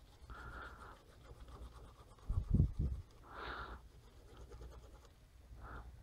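Faint scratching of a Wacom Intuos 3 stylus nib dragged across the tablet's drawing surface in a few short soft strokes, with a brief low sound about halfway through.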